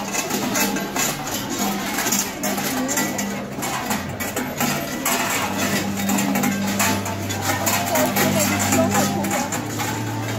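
Large cowbells on the belts of fur-costumed Perchten clanging and jangling irregularly throughout, over music with long held low notes and crowd chatter.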